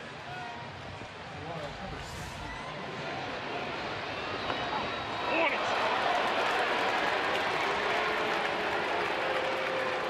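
Ballpark crowd noise: a general murmur of many voices that swells about halfway through and stays louder.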